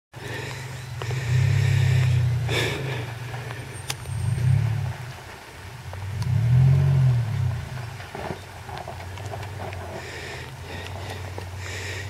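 Engine of a four-wheel drive running at a distance, revving up in three swells and settling back between them.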